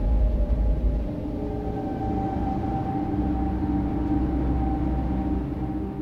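Dark cinematic soundtrack drone: a deep low rumble left by an impact, easing off about a second in, under steady low sustained tones.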